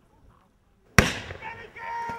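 Near silence, then one sharp, loud bang from a pyrotechnic charge about a second in, followed by shouting voices.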